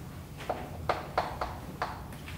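Chalk tapping and clicking against a blackboard as a line is written, about five sharp taps over the two seconds.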